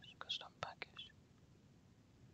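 A few faint sharp clicks and short breathy, whisper-like sounds close to the microphone in the first second, then only a low steady hiss.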